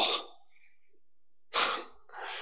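A pause in room tone, then about one and a half seconds in a single short, sharp exhale of breath from a man close to the microphone.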